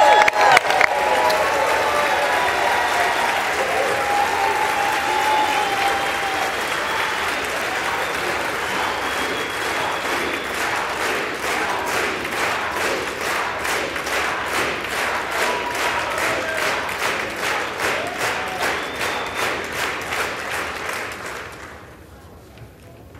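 A large crowd of lawmakers applauding and cheering, with voices calling out in the first few seconds. The clapping thins to scattered, distinct claps and stops about a second before the end.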